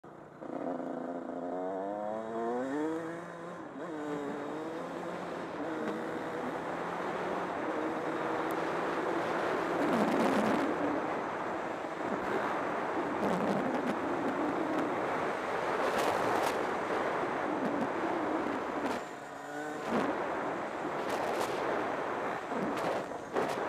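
Honda CR125 two-stroke dirt bike engine pulling away, the revs climbing in steps as it shifts up through the gears over the first few seconds. It then holds speed under heavy wind rush on the helmet camera, and near the end the revs drop and climb once more.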